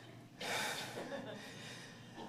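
A man's breathy gasp of laughter, one sharp intake of breath about half a second in that fades away, then faint breathing.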